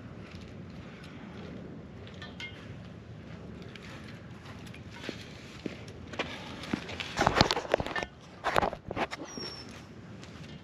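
Footsteps, then a run of loud knocks and rattles between about seven and nine seconds in as a long painted pipe is handled and raised against the rear ladder of a motorhome.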